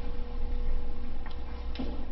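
A few soft, irregular clicks and rustles of Bible pages being turned, close on a clip-on microphone, over a steady low hum.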